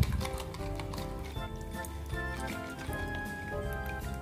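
Background music with held notes, over light clicking of a spoon stirring alum and rose water in a plastic jug.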